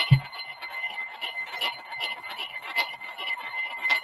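Amplifier-driven coil spinning a sphere magnet: a steady high whine over a faint hiss, with faint irregular ticks throughout.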